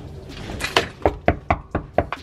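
A hand knocking rapidly on a door, about four knocks a second, starting under a second in.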